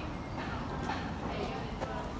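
Outdoor street background with faint, distant voices and a few clopping steps on stone paving.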